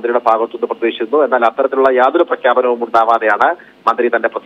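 Speech: a person talking steadily, with a short pause near the end.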